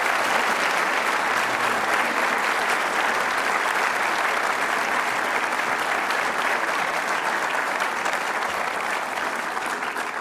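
Audience applauding steadily, beginning to die down near the end.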